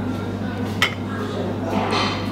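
A metal fork clinks once against a metal serving bowl near the middle, a short sharp clink with a brief ring, over a steady low hum.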